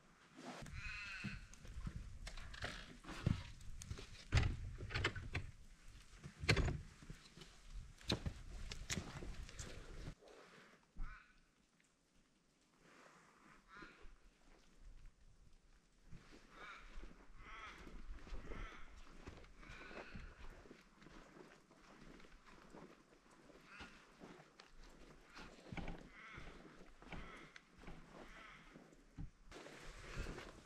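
Footsteps and knocks on old wooden floorboards for about the first ten seconds. After that it is quieter, with faint wavering calls now and then.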